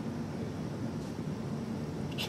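Steady low background hum and rumble with no distinct event in it.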